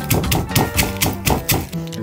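Stone pestle pounding roasted peanuts in a stone mortar: quick, even knocks at about six a second, the peanuts being crushed a little at a time. Background music plays underneath.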